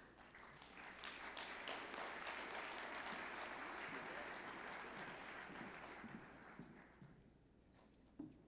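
Audience applauding, building up over the first second, then dying away about six to seven seconds in.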